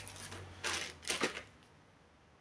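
Handling noise of a plastic power-adapter brick and its cable being taken up by hand: two short rustling clatters about half a second apart, then quiet.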